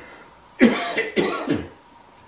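A man coughing: a short run of three coughs starting about half a second in, over in about a second.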